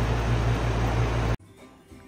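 Outdoor air-conditioner condenser unit running after a failed capacitor was replaced: a steady rush of air with a low hum. It cuts off suddenly about a second and a half in, leaving quiet room tone.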